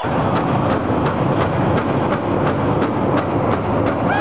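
Powwow big drum struck in unison by a circle of drummers, a steady even beat of about four strikes a second, echoing in a large stone hall.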